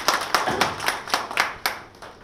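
A small audience clapping, the separate claps of a few people audible rather than a solid roar, dying away near the end.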